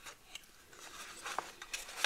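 Hands handling a small folded cardstock box: faint rustling of card and paper with a few light clicks, the sharpest about one and a half seconds in.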